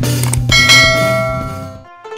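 Closing chime of a channel intro jingle: a bright bell-like strike about half a second in, ringing with several clear tones and fading away near the end.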